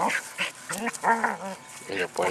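Border collie giving a few short pitched vocal sounds while herding a rock, the longest about a second in.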